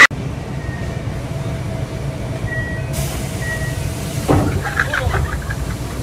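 Steady low rumble of a train carriage running, heard from inside the car, with a faint steady whine over it. A person's voice is heard briefly about four seconds in.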